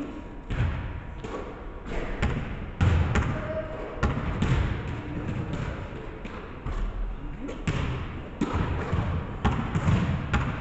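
A basketball bouncing and thudding on a hardwood gym floor during shooting practice, a dozen or so irregular thumps, each followed by a reverberating echo.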